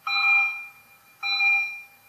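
Electronic alarm tone beeping twice, each loud beep about half a second long and a little over a second apart, made of several steady pitches sounding together.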